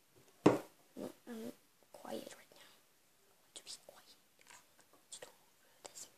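A sharp knock about half a second in, then soft murmured voice sounds and a scatter of small clicks and taps as a popsicle-stick box is handled on a wooden table.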